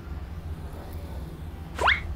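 A quick upward-sweeping whistle sound effect near the end, rising sharply in pitch in a fraction of a second. It is the loudest thing here, over a steady low background hum.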